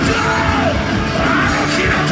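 Hardcore punk band playing live through a club PA: distorted electric guitars and drums, with a vocalist yelling over them.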